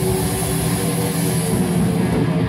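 Live rock band's distorted electric guitars holding a loud, steady droning chord.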